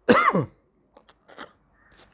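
A man clearing his throat: one short, loud rasp right at the start, falling in pitch, then a couple of faint short sounds.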